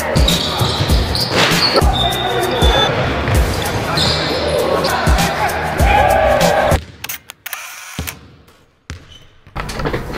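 Basketball bouncing on a sports-hall court amid shouting voices, over a music track with a regular beat. The sound drops away suddenly about seven seconds in, leaving only a few faint clicks.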